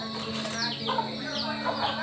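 Domestic chickens clucking close by, with several short, high, falling chirps.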